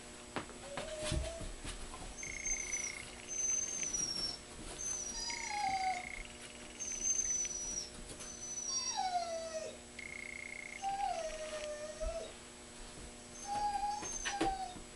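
A dog whining and whimpering in a run of high, drawn-out cries, several sliding down in pitch, one every second or two.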